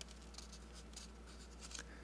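Faint scratching of a marker writing on paper, in short irregular strokes as figures are written out.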